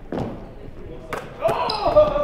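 A basketball shot: one sharp knock of the ball about a second in, then a man's excited shout.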